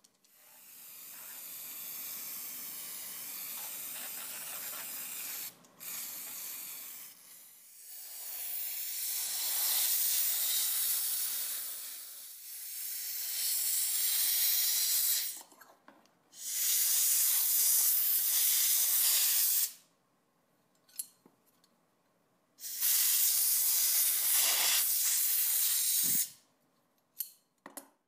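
Compressed-air blow gun hissing in several long bursts, a few seconds each, blowing liquid off rusty steel scissors; the later bursts start and stop sharply with the trigger.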